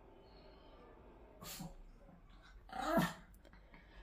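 Small white spitz-type dog giving a short growl about three seconds in, with a briefer, softer sound about a second and a half in.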